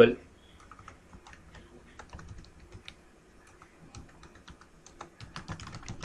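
Typing on a computer keyboard: faint, irregular keystroke clicks, coming faster near the end.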